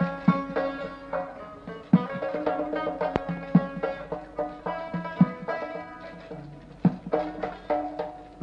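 Instrumental passage of traditional Khorezmian Uzbek music: a plucked string instrument plays the melody over hand-drum strokes, with no singing. It gets softer toward the end.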